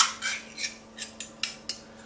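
A small hand-held kitchen container being twisted in the hands: a run of about eight short, irregular clicks and scrapes, the first and loudest right at the start.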